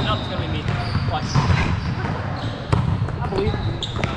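Indoor volleyball gym: background voices, sneakers squeaking on the hardwood floor and a few sharp thumps of volleyballs being hit or bouncing, the loudest about two and a half seconds in.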